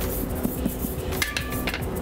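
Kitchen dishes and utensils knocking and clinking as they are handled, likely while the soufflé ramekins are made ready for the oven.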